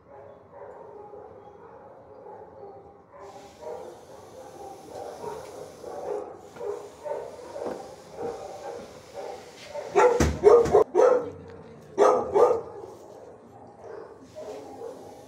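Dogs barking in a shelter kennel: a continuous chorus of barking in the background, then two short clusters of loud, close barks near the end.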